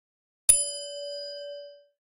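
A single bell ding, a notification-style chime sound effect, struck once about half a second in. It rings on for over a second and then fades away.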